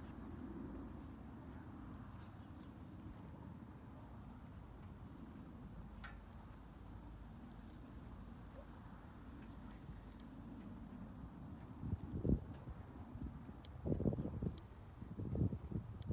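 Faint low rumble of wind on the microphone outdoors, with a few irregular low thumps in the last four seconds.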